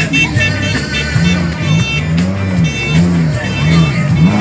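Rally car engine revved in a series of quick blips starting about a second in, its pitch rising and falling roughly twice a second. Music plays loudly over it.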